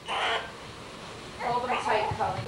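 Newborn baby crying: a short cry right at the start and another, wavering one in the second half.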